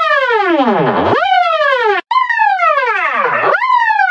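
Digitally processed audio effect: a buzzy pitched tone with strong overtones that swoops steeply downward about once a second, each time snapping quickly back up before falling again, with a brief cut near the middle.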